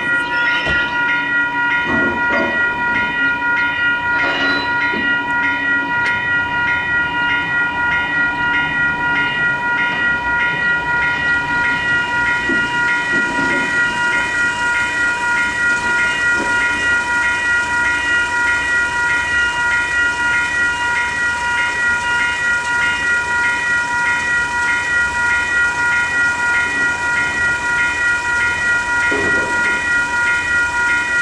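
Western Cullen Hayes electronic crossing bell ringing steadily at a level crossing, a high multi-tone ding repeating at about three strikes a second, sounding while the crossing is activated for an approaching train.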